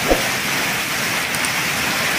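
Very heavy rain pouring onto trees and the ground in strong wind, a steady hiss, with a short thump right at the start.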